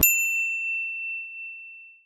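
A single high, clear bell-like ding that starts suddenly and fades away over about two seconds, its brighter overtones dying out first. It is an edited-in sound effect under a text card.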